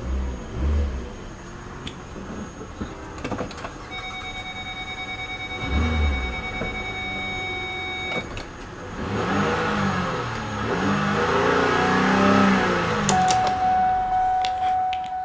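2008 Lincoln MKZ's 3.5-litre V6 heard from inside the cabin, idling with a steady electronic tone from about four to eight seconds in, then revved twice in the second half, its pitch rising and falling each time.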